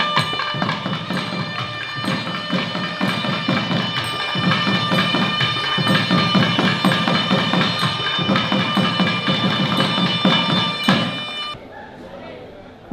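A Carnatic nadaswaram ensemble plays: a loud, sustained reed melody over a steady drone, with rapid thavil drum strokes. The music cuts off suddenly near the end.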